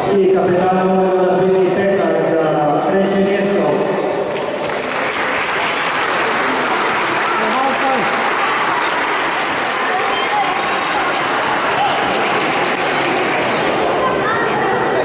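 Audience applauding, a steady clapping that starts about four seconds in and carries on, following a voice.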